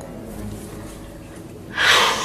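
A young girl's breathy gasp near the end, loud and noisy, as she cries.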